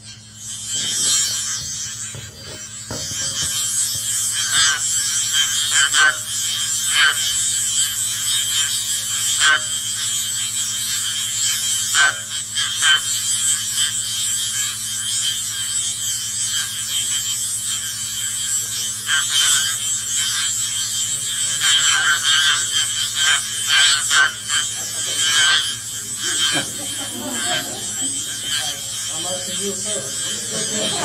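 Playback through loudspeakers of an ultrasound recording shifted down into hearing range. It is a steady high hiss with a constant high whine, broken by irregular sharp crackles and clicks. The presenter says the ultrasound was detected inside an energy beam above a pyramid.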